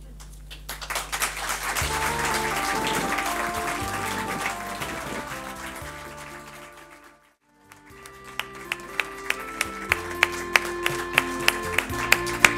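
Audience applause over instrumental music, fading out about halfway through. After a brief silence a different piece of instrumental music begins, with a steady beat of sharp notes under held tones.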